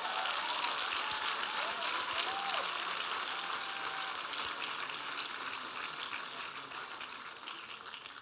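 Audience applauding, the clapping dying away gradually over the last few seconds.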